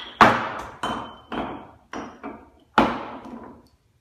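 Cups being clapped and struck down on a wooden floor in the cup-song rhythm: about seven sharp, uneven hits, the loudest at the start and near the three-second mark, each ringing briefly. The hits stop shortly before the end.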